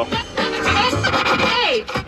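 Music playing over the CLK320's factory car stereo from an FM radio station, loud in the cabin, with a short dip in loudness near the end.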